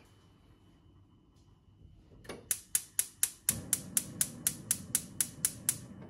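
Gas hob igniter clicking about four times a second as a burner is lit, with the burner catching partway through and a steady low rush of gas flame carrying on under the last clicks.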